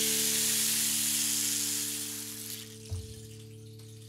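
A steady hiss lasting about two and a half seconds and fading out, over an acoustic guitar chord left ringing; a soft knock about three seconds in.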